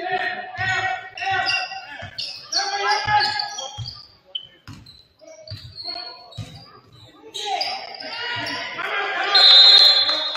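Basketball dribbling and thudding on a hardwood gym floor, with players shouting to each other in the echoing hall. Near the end a referee's whistle blows, the loudest sound, stopping play.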